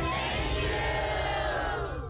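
A large crowd of people shouting together in one long cheer, which starts to die away near the end, with a music bed beneath.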